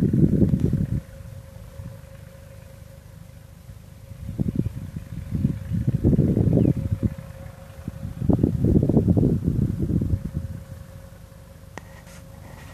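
Wind buffeting a phone's microphone: low rumbling gusts that come and go three times, with a faint steady tone underneath.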